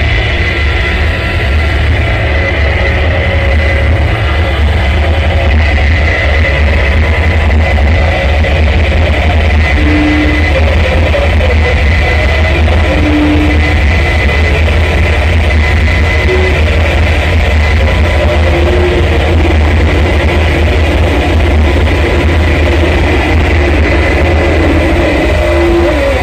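Live harsh noise music from a performer's electronics: a loud, unbroken wall of distorted noise over a heavy low drone, with a thin steady high tone. A few short pitched blips sound over it from about ten seconds in.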